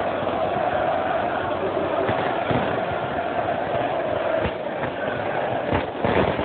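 Large crowd of football supporters chanting in unison, loud and dense, with a few sharp firecracker bangs going off in the crowd, the last one near the end.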